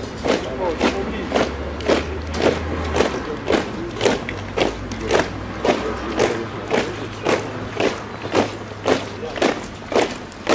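A squad of ceremonial guards marching in step, their boots striking the stone paving together in an even rhythm, just under two steps a second.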